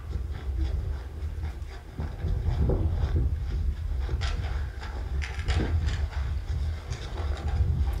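Steady low wind rumble on the microphone of a hand-carried camera, with scattered footsteps and handling knocks from walking across the field.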